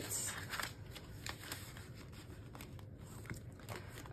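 Paper bills and the plastic sleeves of a ring binder being handled: faint rustling and crinkling with scattered soft clicks, a little louder just at the start.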